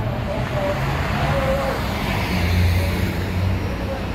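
Road traffic noise with a vehicle going by, swelling to its loudest about two and a half seconds in, with a faint voice underneath.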